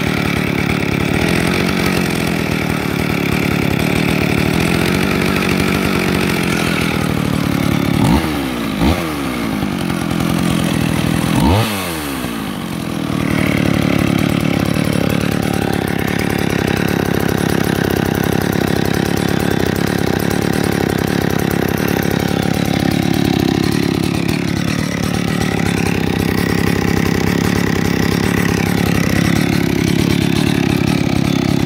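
McCulloch President two-stroke chainsaw idling steadily, with the throttle blipped three times about eight to twelve seconds in, each a quick rise and fall in engine pitch.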